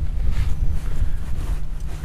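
Wind buffeting the microphone: a steady, ragged low rumble.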